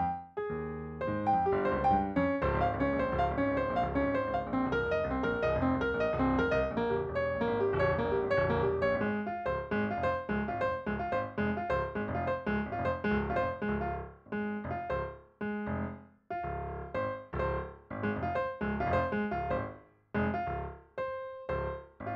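Piano music played with both hands on a digital keyboard. A dense, busy passage runs for most of the first half, then thins into separated phrases and chords with short pauses between them in the last several seconds.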